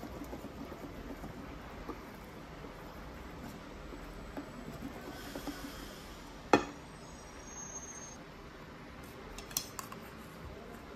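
Wire whisk stirring thick carrot cake batter in a bowl, a faint steady scraping and slapping. About two-thirds of the way through comes a single sharp metal clink against the bowl, the loudest sound, and a couple of lighter clinks follow near the end.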